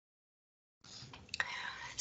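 Dead silence for most of the first second, then a faint breath with a single small click about halfway through, building just before a woman starts speaking.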